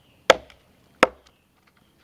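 Machete blade chopping into a log, two sharp strikes about three-quarters of a second apart, cutting a V-notch into the wood.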